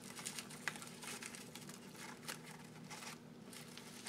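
Faint, irregular crinkling and ticking of taped brown kraft paper and twine being handled, as the twine is tied around the twisted paper trunk.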